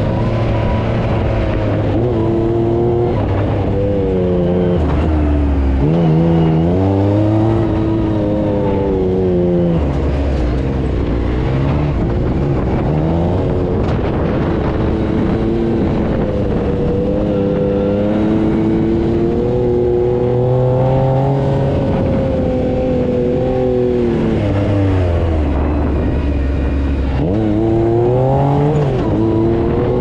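Side-by-side UTV engine heard from the cab, its pitch rising and falling over and over as the throttle is worked across sand dunes.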